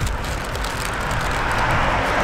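Road traffic: a car approaching on the street, its noise growing steadily louder.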